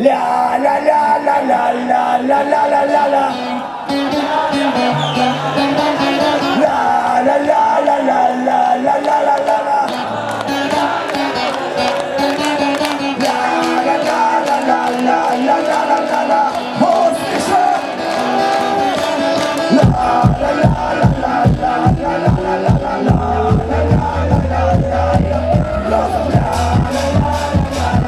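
Folk-rock band playing an instrumental passage live, violin and hurdy-gurdy carrying the melody; about twenty seconds in the drum kit comes in with a steady driving beat and a rising tone climbs over it.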